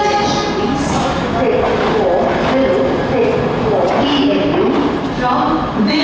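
Alstom LHB passenger coaches rolling past at low speed as the train departs, wheels clattering on the track under a steady rumble. Voices talking run over the train noise.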